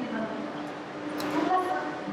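Indistinct, faint voices of people nearby over a steady low hum of background noise.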